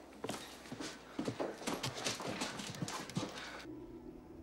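A run of irregular knocks and scuffs, several a second, that stops just before the end as low, sustained music comes in.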